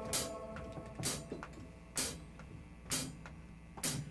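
Live band's drum kit keeping a slow beat in a quiet stretch between sung lines, a sharp hit with cymbal about once a second, five in all, over faint held guitar notes.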